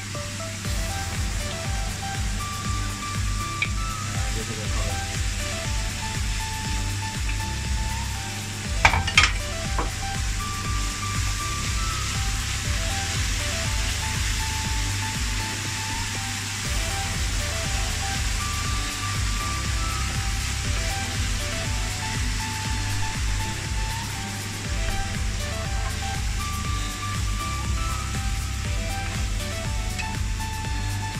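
Chopped vegetables sizzling as they fry in a hot pan and are stirred with a wooden spoon, with two sharp knocks about nine seconds in. Upbeat background music with a steady beat plays throughout.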